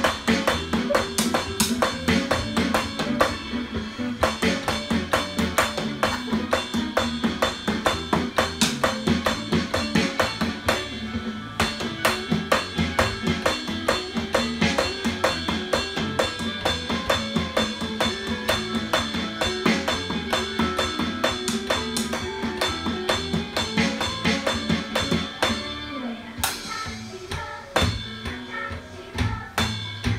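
Drum cover on an electronic drum kit, with quick, steady strikes of kick, snare and cymbals played along to a backing song.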